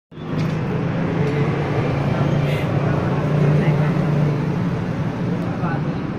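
Indistinct murmur of people talking close by over a steady low hum, with a few faint crackles of paper being torn up by hand.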